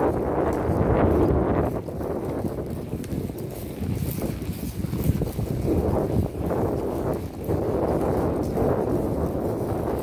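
Wind buffeting the microphone in gusts, with the hoofbeats of horses walking through grass underneath.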